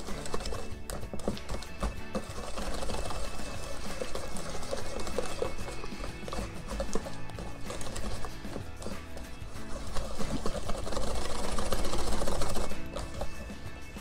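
Wire balloon whisk beating a runny egg-and-fromage-blanc batter in a stainless steel bowl: rapid, continuous strokes of the wires clicking and scraping against the metal. Background music plays underneath.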